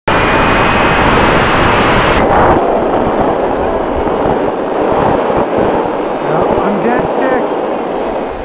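Small glow-fuel RC model airplane engines running flat out in flight, a loud, steady buzz mixed with heavy wind noise on the microphone; the lower rumble drops away about two and a half seconds in.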